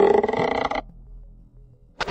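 Sound effect of a wooden bow creaking as it is drawn: one rough, buzzy creak lasting under a second, then a quiet stretch.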